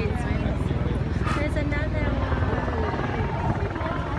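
A steady low rumble with people's voices in the background.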